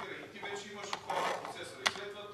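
Indistinct speech in a room, with one sharp click a little before the end.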